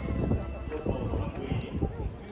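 A voice over a racetrack loudspeaker calling a horse race, with short low thuds and a rumble underneath.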